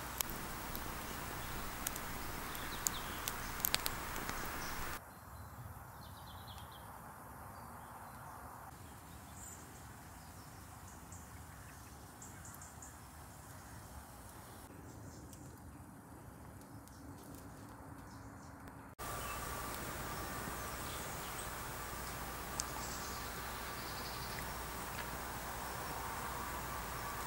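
Faint woodland ambience with birds calling, made of three spliced stretches. Sharp crackles from a small wood fire come in the first few seconds, then a much quieter stretch follows. A faint steady tone runs through the last part.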